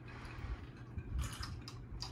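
Margaritas on ice being drunk from glasses: faint sips and a few small clicks of ice and glass, mostly past the middle.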